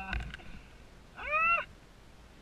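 A single short, high-pitched vocal cry that rises and then falls, about a second in, from the rider, following on from his laughter. Some brief voice sound comes at the very start.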